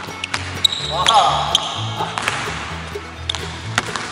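Basketball bouncing on a hardwood gym floor as a player dribbles, several sharp bounces over background music with a steady bass line.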